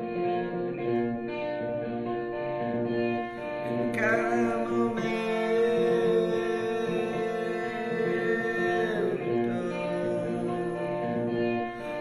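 A man singing over a semi-hollow electric guitar, the guitar's chords ringing on under the voice. About four seconds in, the voice slides up into a long held note.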